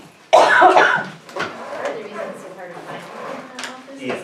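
A person's single loud, sharp cough about a third of a second in, followed by quieter room talk.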